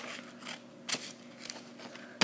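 Scissors cutting through paper wrapping paper: a few short snips, the sharpest about a second in.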